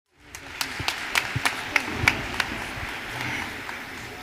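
Audience applause in a large hall. Over the first two and a half seconds, sharp single claps stand out at about three a second, then the applause fades a little.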